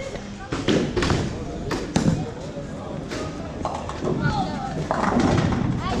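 A bowling ball knocking down onto the lane and rolling toward the pins, then a crash as it knocks down all but two of them, amid voices in the hall.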